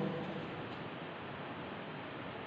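Faint, steady background hiss of room tone, with no distinct events.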